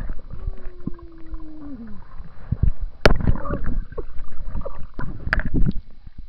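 Water splashing and sloshing around a camera as it is dipped in and out of the water, with gurgling and knocks against the housing. Early on a single held tone slides down in pitch.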